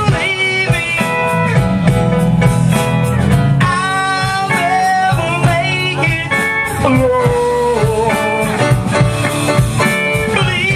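A live rock band playing, with electric guitars, bass guitar, drum kit and keyboard. A high melody line bends between held notes over a steady low end.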